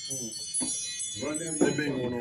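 Wordless vocal sounds from a man, short and broken near the start and longer in the second half, reactions to the burn of a very hot sauce. A steady high-pitched ringing sits underneath.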